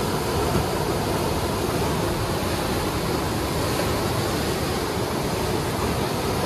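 Steady rush of white water churning through a river's standing wave, an even noise heaviest in the low end.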